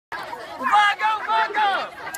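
A raised voice calling out over background chatter of a group.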